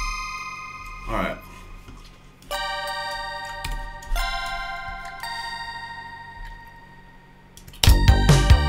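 Software bell instrument playing chords of bright, ringing bell notes that fade slowly, a new chord struck about two and a half seconds in and another about a second and a half later. A brief vocal sound comes about a second in, and just before the end a full electronic arrangement with a beat starts playing.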